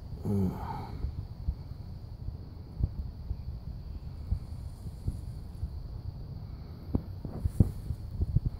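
Low rumble with scattered soft knocks and taps from a phone camera being hand-held against a telescope eyepiece adapter, and a brief voiced hum about half a second in.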